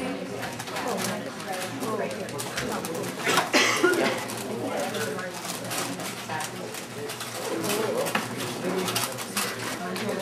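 Quick, irregular clicks of a 4x4 Rubik's cube's plastic layers being turned in rapid succession during a speedsolve, with people talking in the background.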